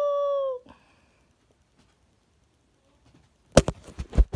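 A person's long held hummed note that ends about half a second in with a slight drop in pitch. Near silence follows, then a few sharp knocks and clicks near the end.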